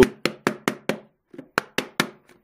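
A hard plastic tackle box (NGT XPR) struck repeatedly by hand on its lid: about nine sharp knocks, a quick run of five, a brief pause about a second in, then four more.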